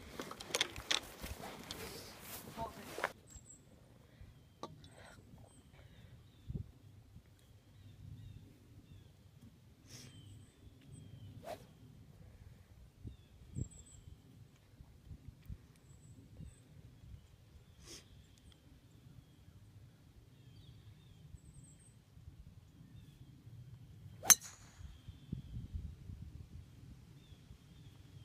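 A golf club striking a ball on a tee shot: one sharp, loud crack about three-quarters of the way through. Before it, a long quiet stretch with faint bird chirps and a few soft clicks; the first few seconds hold rustling noise.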